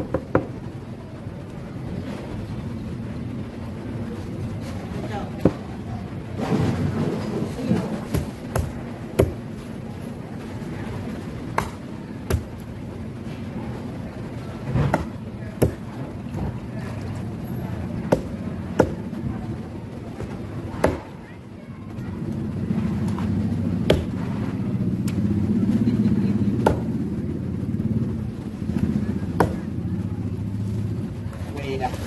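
A large knife chopping on a wooden block: a dozen or so sharp, separate chops at irregular intervals.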